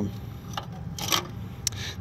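A few light metallic clicks from a keyring and carabiner hanging in a motorcycle's ignition switch, the middle one a brief rattle, over a faint low hum.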